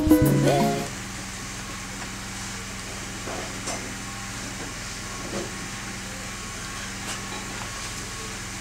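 A music jingle ends about a second in, leaving steady room noise with a low hum. A few faint soft knocks and rustles follow as a man sits down on a fabric sofa.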